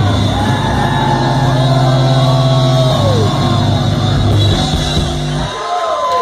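Live rock band holding its closing chord on electric guitars and bass, with audience members whooping over it. The band cuts off sharply about five and a half seconds in, and the whoops carry on.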